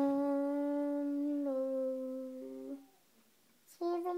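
A child humming a long held note that steps down slightly to a second held note, stopping about three seconds in, then a brief hummed note near the end.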